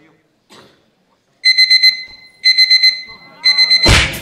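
Digital alarm clock beeping: three bursts of four quick high beeps about a second apart, ending in a loud hit as the dance music kicks in.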